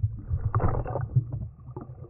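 Muffled sound through a submerged camera: a steady low rumble of moving water, with a brief rush of churning water and bubbles about half a second in, then scattered knocks.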